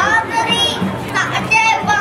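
A young boy singing into a microphone, a high child's voice with drawn-out notes that bend in pitch.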